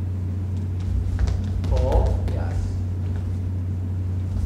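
A fencing exchange: a scatter of sharp taps and clicks from footwork and blades, over a steady low hum. A short vocal sound comes about two seconds in.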